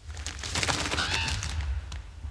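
A thunderclap: a loud crackling burst lasting nearly two seconds over a deep rumble.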